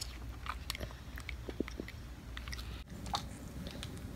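A young child biting and chewing a crisp apple slice: small, irregular crunches and wet mouth clicks.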